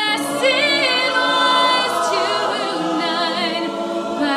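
A mixed-voice a cappella group singing sustained chords in several vocal parts, with no instruments.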